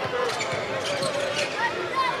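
A basketball dribbled on a hardwood court, with several sharp bounces, over the steady noise and voices of an arena crowd.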